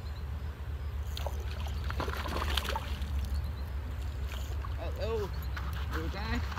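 River water splashing and sloshing close to the microphone, in short bursts mostly in the first half, over a steady low rumble. A brief indistinct voice sound comes near the end.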